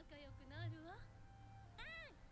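Faint, high-pitched cartoon dialogue playing quietly, a voice whose pitch slides up and down in a sing-song way for about a second, then a pause before another voice starts just before the end.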